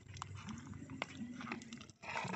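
A few faint, sharp clicks of shells knocking together as a gloved hand picks them up from the sandy bottom.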